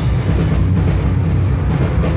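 Metal band playing live at full volume: heavily distorted electric guitars and bass over drums in a dense, unbroken wall of sound.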